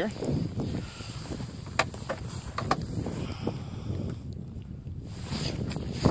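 Wind buffeting the camera's microphone in a steady low rumble, with a few sharp clicks and knocks about two seconds in as the camera is handled and set down on the ice.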